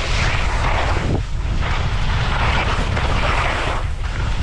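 Skis scraping and hissing through chopped-up snow in a run of turns, the hiss swelling with each turn and dipping briefly a little past a second in and again near the end, over heavy wind buffeting on the camera microphone.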